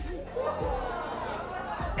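Studio audience reacting, a murmur of many voices at once, under a background music bed.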